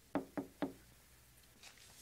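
Three quick knocks on a door, about a quarter of a second apart, announcing a visitor.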